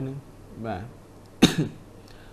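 One short, sharp cough about one and a half seconds in, between brief bits of speech.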